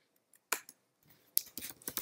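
Computer keyboard keystrokes while typing code: a single key click about half a second in, then a quick run of several clicks near the end.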